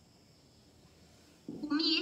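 Near silence with faint room tone, then a high-pitched woman's voice starts speaking about one and a half seconds in.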